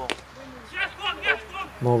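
Cricket bat striking the ball: one sharp crack right at the start, followed by faint voices.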